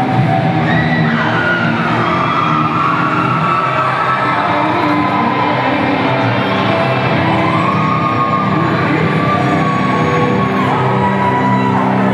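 Live rock band playing loud and steady: distorted electric guitars, bass and drums, with a high melody line sliding up and down in pitch over the top.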